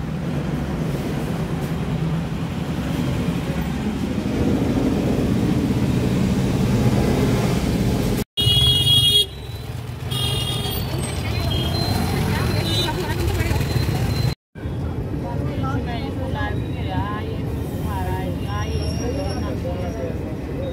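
Busy street traffic: a steady low engine and road noise with vehicle horns, a loud honk about eight seconds in. In the last part, people talking over the traffic.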